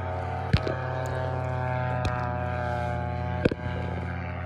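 Paramotor engine idling steadily, with two sharp clicks, one about half a second in and one near the end.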